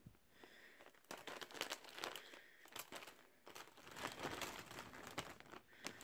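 Soft crinkling of a plastic zip-top bag as a hand rummages through a pile of plastic pacifiers inside it, in irregular spurts with brief pauses.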